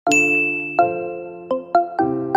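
Dance music cuts off abruptly and a bright chime rings out and slowly fades, followed by a few light, bell-like struck notes of a gentle background tune.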